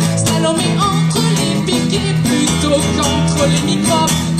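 Live song played on acoustic and electric guitars, with a woman singing over it.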